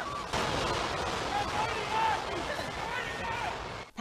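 Loud, steady noise of a school gymnasium shaking in an earthquake, with scattered shouts and cries from the people inside. The noise cuts off suddenly near the end.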